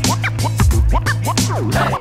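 Turntable scratching over a hip hop beat: a record pushed back and forth in quick rising and falling swipes, over a steady bass note and drums.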